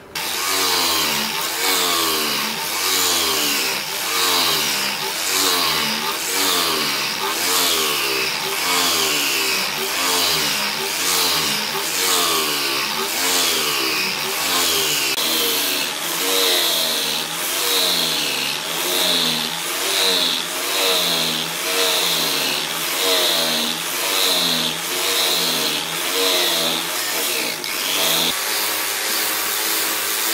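Electric angle grinder with a sanding disc grinding a wooden axe handle blank to shape. The motor runs continuously, its pitch dipping and recovering over and over as the wood is pressed against the disc and eased off.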